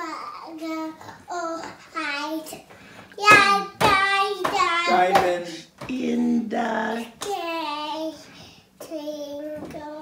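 A toddler singing, a string of drawn-out sung notes one after another with short breaths between.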